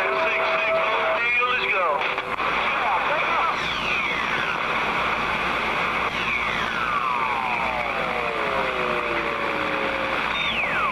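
CB radio on sideband receiving skip: a steady rush of static with faint, garbled distant voices. Whistling heterodyne tones glide down in pitch, one about three seconds in and a pair that falls slowly over the last four seconds.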